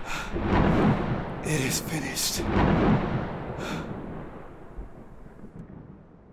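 Thunder rumbling, starting suddenly, with sharper cracks about two seconds in and again near four seconds, then slowly fading away.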